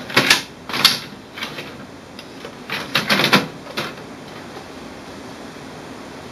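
Plastic paper input tray of an HP OfficeJet Pro 9015 printer being pulled out by hand: a run of clicks and knocks, two sharp ones in the first second and a cluster around three seconds in.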